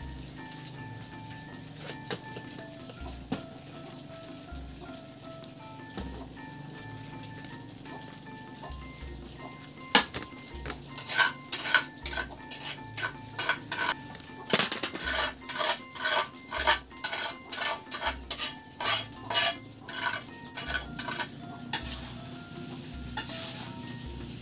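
Metal spatula scraping and clanking against an aluminium wok as rice is stir-fried over a wood fire, in a run of quick strokes about two or three a second through the second half. Soft background music runs underneath.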